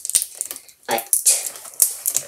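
Thin plastic water bottle handled at close range while a straw is taped to it: scattered sharp clicks and crinkles, strongest about a second in and near the end.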